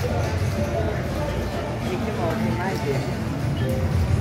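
EGT 'Flaming Hot' video slot machine playing its electronic reel-spin music and jingles as the reels spin and stop, over a steady low hum and indistinct voices.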